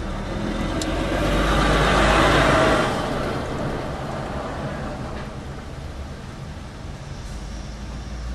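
Low steady rumble inside a car, with a swell of rushing noise that builds about a second in, peaks and fades out by about three seconds in.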